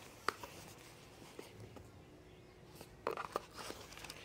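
Faint handling of a cardboard product box: a single sharp tap about a quarter second in, then a short run of clicks and rustling near the end as the box is opened.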